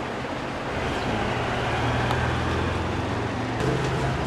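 Steady background rumble and hiss like road traffic, with a low engine hum that grows louder about a second in and eases off near the end.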